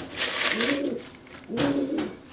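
Soft cooing of a pigeon, two arching coos, one about the middle and one near the end, with a brief rustling rush in the first second.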